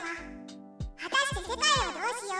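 Background music with steady notes and regular low bass hits, under a high-pitched voice speaking Japanese with wide sing-song pitch swoops. The voice pauses for most of the first second, then resumes.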